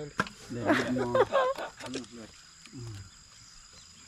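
A person's voice laughing and exclaiming without clear words, loudest in the first second and a half, then a short low vocal sound near the end.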